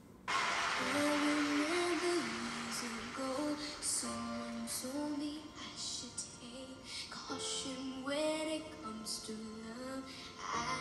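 A young girl singing a slow ballad melody over soft instrumental backing. It begins with a brief rush of noise.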